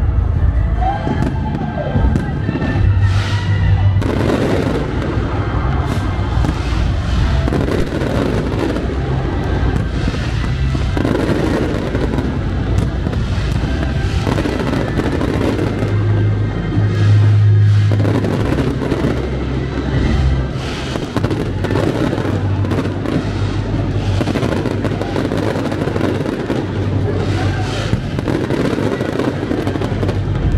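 Aerial fireworks firing and bursting in quick succession, with crackling shells, over music.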